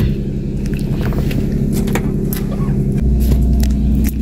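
A car's engine idles with a steady low hum while a reflective bubble-foil windshield sunshade is handled and folded, giving scattered crinkles and crackles. A deeper rumble comes in about three seconds in.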